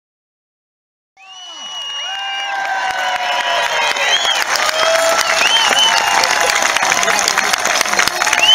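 A large outdoor crowd applauding and cheering, with whoops and shouts over the clapping; it fades in about a second in and builds louder.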